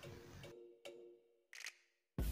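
Near silence: faint room tone with a low steady hum that fades out, and two faint clicks about a second apart.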